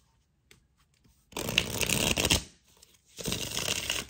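Tarot deck being shuffled by hand, two bursts of rapid card flicking about a second long each, the first about a second in and the second near the end.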